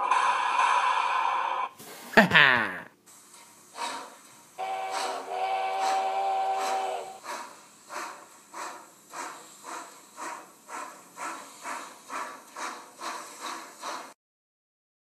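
Steam locomotive sound effect: hissing, then a steam whistle held for about two and a half seconds, then steady chuffing at about two to three beats a second that quickens slightly as the train gets under way. A short laugh comes about two seconds in.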